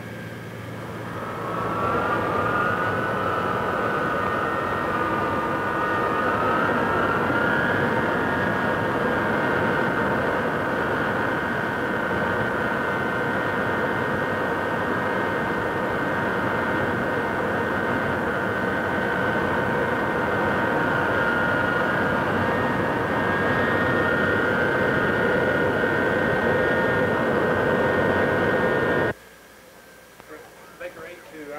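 Boeing B-52 Stratofortress jet engines spooling up on the ground: a whine rises over the first two seconds, then runs steady and loud with a rushing roar beneath it, and cuts off suddenly near the end.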